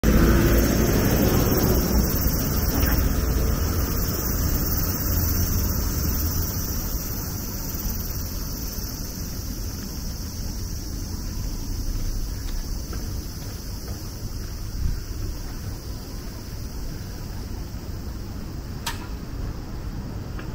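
Outdoor street noise: a steady low rumble of road traffic mixed with wind on the microphone. It is loudest at the start and eases off, with a short faint click near the end.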